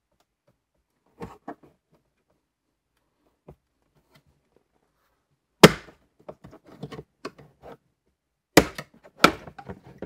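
Plastic retaining tabs of a Mini Cooper's central display trim ring snapping loose as a plastic trim tool pries it off the dash: a few light clicks, one loud sharp snap about halfway through, small clicks, then two more sharp snaps near the end. The clips are tight because the car is new.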